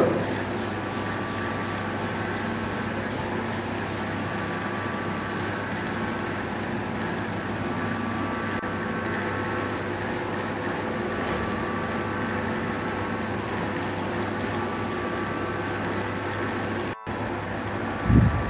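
Steady room hum with several constant tones running evenly throughout. It drops out for a moment about a second before the end.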